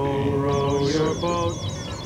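The computer's voice intoning the next output number of its endless counting program in a long, held monotone, then shorter notes. A quick run of falling electronic chirps, about six a second, plays from about half a second in.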